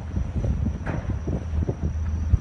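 Wind buffeting the phone's microphone in uneven gusts over a low, steady rumble, with a faint high steady whine above.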